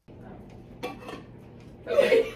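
Dinner-table clatter of dishes and cutlery, with a sharp clink a little under a second in and voices rising near the end.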